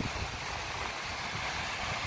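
Surf breaking on a sandy beach with wind blowing across the phone's microphone: a steady rushing noise over an uneven low rumble.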